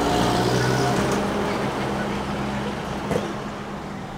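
Road traffic: a motor vehicle's engine running with a steady low hum that grows gradually quieter over the few seconds.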